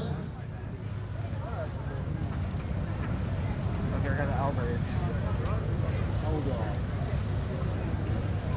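A steady low engine drone, with faint voices of people talking nearby.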